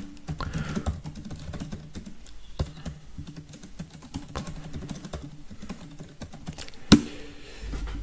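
Typing on a computer keyboard: a quick run of key clicks, with a single louder key press about seven seconds in.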